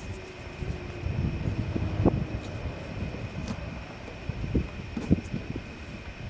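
Low steady rumble, with a few small sharp clicks about two seconds in and again near five seconds as a plastic trim clip on the trunk lid is pushed and pried with a plastic pry tool.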